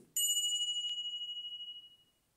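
A single bright ding from a subscribe-button notification sound effect. It rings on one high note and fades out over about two seconds, with a short click about a second in.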